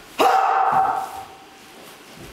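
A man's loud martial-arts shout, held with a steady pitch for most of a second and then fading, given with a thrust of the staff.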